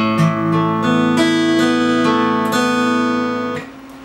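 Steel-string acoustic guitar fingerpicked one string at a time: an arpeggio up an open A chord and back down, the notes ringing over each other. The strings are damped together about three and a half seconds in.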